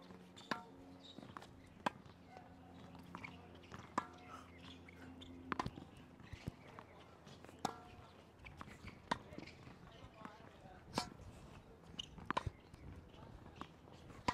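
Tennis ball hit back and forth in a short-court rally: sharp pops of racket strings striking the ball and the ball bouncing on the hard court, one every second or two.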